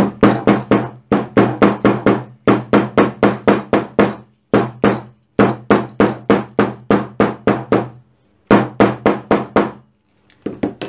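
Steel-faced shoemaker's hammer striking leather over a cutting mat, flattening an opened back seam. The blows come quickly, about six a second, in runs separated by short pauses.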